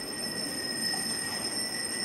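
Small altar hand bells rung without pause as the monstrance is raised, a steady high ringing that marks the blessing with the Blessed Sacrament.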